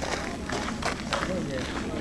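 Footsteps of someone walking at an even pace, a few steps a second, with voices of people talking in the background.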